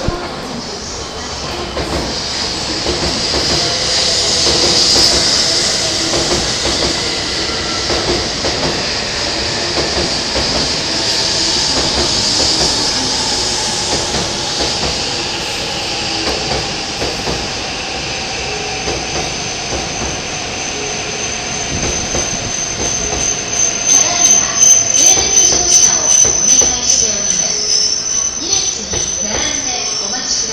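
E7/W7 series Shinkansen train running slowly along the platform track: a steady rush of wheels on rail with some wheel squeal. From about two-thirds of the way in a thin high-pitched squeal builds, and near the end it becomes the loudest sound, pulsing rapidly.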